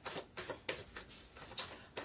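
A deck of tarot cards being shuffled by hand: short card swishes and slaps, about three a second.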